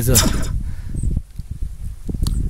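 A man's voice trails off in the first moment, then a low, uneven rumble fills the rest.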